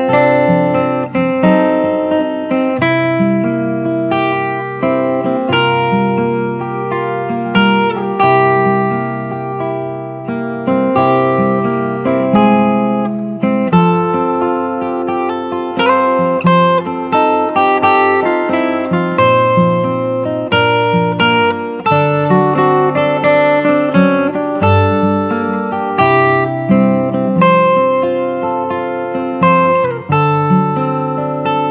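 Instrumental acoustic guitar music: strummed and picked notes, each ringing and fading, in a steady rhythm.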